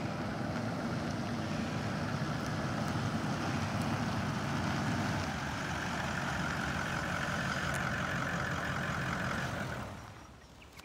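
Toyota Land Cruiser Troopcarrier driving slowly up a dirt driveway and pulling up, its engine running steadily with a low rumble and a faint whine over it. The sound drops away sharply near the end as the engine stops.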